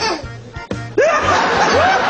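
A baby laughing, breaking about a second in into a loud, sustained, high-pitched cackle.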